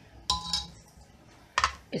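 Two sharp clinks of dishes about a second apart, the first ringing briefly, as a serving bowl is handled on a tray.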